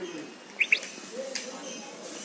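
A bird chirping: two quick, sharp chirps about half a second in, then a single fainter one a little later.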